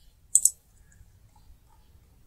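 Computer keyboard keys clicking: a sharp double click about a third of a second in, with the Alt-Tab key presses that switch windows, then only a few faint small ticks.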